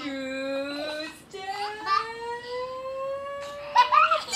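A long, drawn-out wordless voice building anticipation in a tickle game: one held note, then a slow upward glide in pitch over about two and a half seconds. It breaks off near the end with a sudden loud burst as laughter starts.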